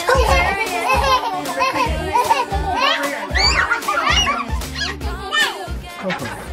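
Children's excited chatter, squeals and laughter over background music with a steady beat of about two a second.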